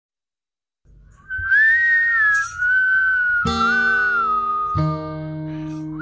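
Music: a whistled tune that starts about a second in, joined by two guitar chords, the first about three and a half seconds in and the second about a second later.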